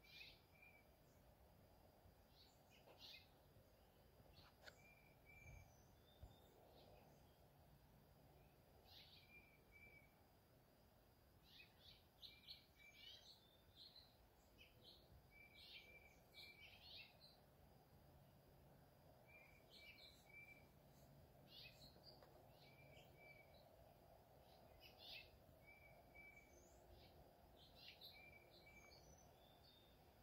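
Faint bird chirps: short high calls come singly and in quick clusters throughout, over a low steady background hum.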